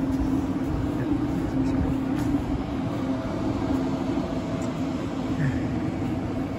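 A KTX-Eum electric multiple-unit train standing at the platform, giving off a steady hum: one held low tone over a low rumble, with a few faint clicks.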